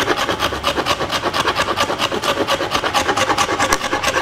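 A mussel shell scraping bark off a termite-hollowed log in rapid, even strokes, cleaning the wood back smooth in the making of a didgeridoo.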